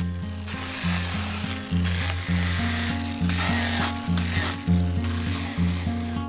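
Acoustic guitar music plays throughout, with a power tool abrading wood in several surges over it from about half a second in until near the end.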